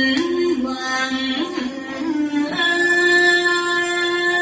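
Music: a woman singing a slow melody. Her voice steps between notes, then holds one long higher note through the second half.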